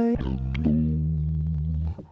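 Male voice sung through the Novation MiniNova's VocalTune in Keyboard Correction mode, its pitch snapped down to a low note played on the keys. It slides down into a deep, held, buzzy tone about half a second in and stops abruptly just before the end.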